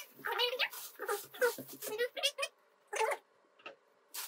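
Plastic wrap rustling as a mixer is handled in a cardboard box, under a string of short pitched vocal calls. The calls stop about two and a half seconds in, return once briefly, and then it goes quiet.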